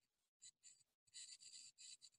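Near silence: faint room tone with a few soft, brief high-pitched ticks in the second half.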